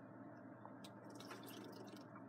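Near silence: steady low room hum with a few faint, short clicks from about a second in.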